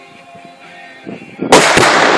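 A sudden, very loud blast about one and a half seconds in, as a target floating on a pond is shot and explodes, throwing up spray and smoke. Faint voices are heard before it.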